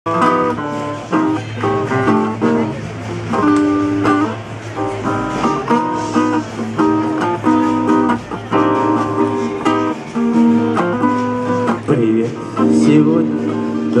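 An acoustic guitar and an electric keyboard play the instrumental introduction of a pop song, with steadily plucked and strummed chords, just before the vocal comes in.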